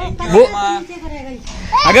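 Only speech: people talking in Hindi, with a short pause before the next voice comes in near the end.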